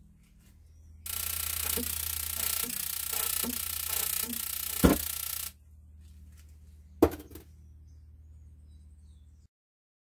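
High-voltage plasma discharge rig running a glow through a plastic tube: a loud buzzing hiss over a steady hum switches on about a second in and cuts off suddenly around five and a half seconds. Sharp snaps come near five seconds and again about seven seconds in, and a faint hum then runs on until the sound stops shortly before the end.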